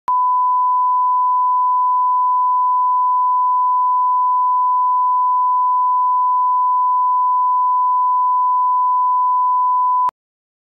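Broadcast test tone: a single steady 1 kHz reference tone of the kind that runs with SMPTE color bars, held unbroken for about ten seconds and then cutting off suddenly.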